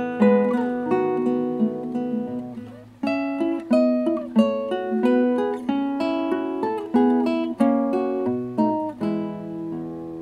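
Nylon-string classical guitar played fingerstyle: a melody of plucked notes over bass notes, each note ringing and dying away. The playing fades almost to nothing just before three seconds in, then a new, louder phrase begins.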